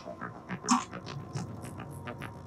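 Action-film soundtrack playing: a series of short, sharp noises, the loudest about three-quarters of a second in.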